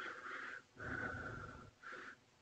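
Faint breathing near a microphone: three soft breaths in a row.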